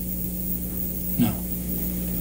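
Steady low hum, with one brief, short voice sound falling in pitch about a second in.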